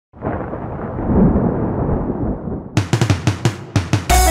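Opening of an electrocumbia song: a low rumbling swell, then about two and a half seconds in a quick drum fill of snare and bass-drum hits that leads into the song.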